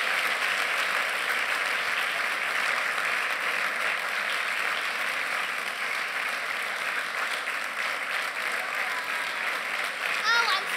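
Audience applauding steadily, easing off slightly toward the end.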